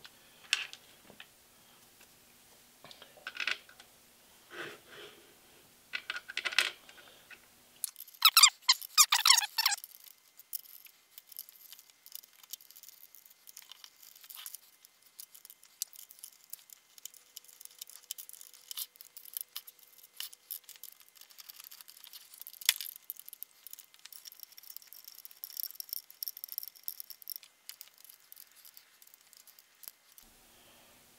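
Hex key and steel hardware clicking, tapping and rattling on a milling-machine table as a fixture plate is bolted down, with a dense run of rattling about eight seconds in.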